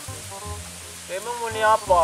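Background music with steady sustained notes, and a voice speaking or singing over it in the second half.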